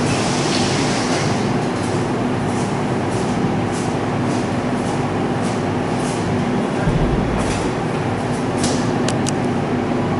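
Steady, fairly loud rumbling noise with a faint hum running through it, and a few sharp clicks near the end.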